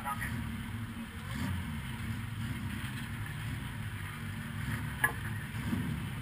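1300-class stock car's engine idling steadily, heard from inside the stripped cockpit, with one sharp knock about five seconds in.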